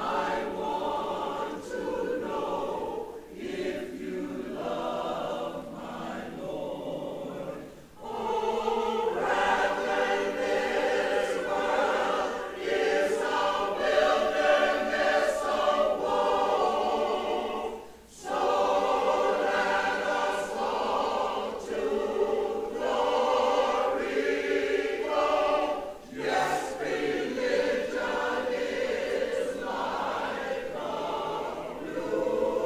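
A mixed choir of men and women singing a spiritual in sustained chords. It sings in long phrases with short breaks about 8 and 18 seconds in, and is louder after the first break.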